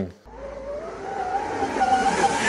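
Scratch-built electric dirt motorcycle riding on gravel: a thin electric motor whine rising in pitch over the rush of tyres on loose gravel, getting louder as the bike comes closer.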